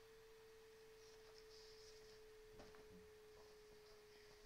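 Near silence with a faint steady single tone, like a hum or whine in the recording, and a faint tick about two and a half seconds in.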